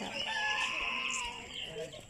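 A rooster crowing once, a single long call lasting about a second and a half.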